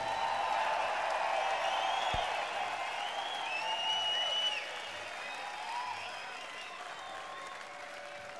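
Audience applauding at the end of a live song, with a few whistles. The applause thins out after about four and a half seconds.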